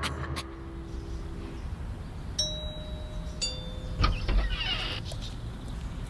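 Two-tone doorbell chime: a higher ding about two and a half seconds in, then a lower dong a second later, both ringing on. A low thump and rustle follow just after.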